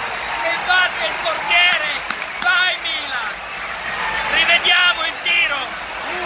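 A man shouting and yelling excitedly in long, high-pitched, drawn-out cries, celebrating a goal, with a few dull thumps among the shouts.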